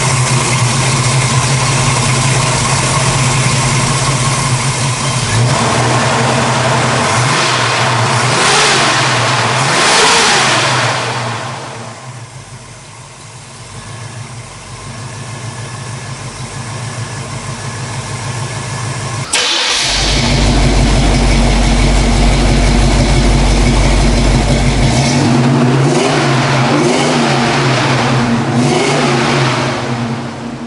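Chevrolet 350 small-block V8 running, revved up and down a couple of times and settling back to a quieter idle. About two-thirds in the sound jumps suddenly to a louder, deeper drone, and there are more revs near the end.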